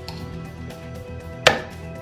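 A single sharp clink of a metal teaspoon knocked against the blender jug while Dijon mustard is spooned in, about one and a half seconds in, over soft background music.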